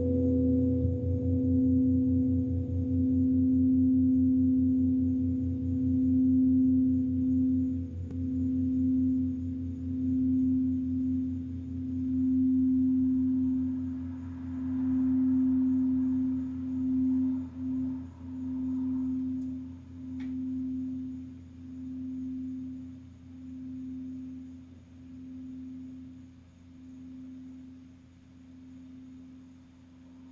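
Crystal singing bowl sung with a mallet, holding one steady tone with a lower hum beneath it. The tone pulses in loudness and slowly fades over the second half.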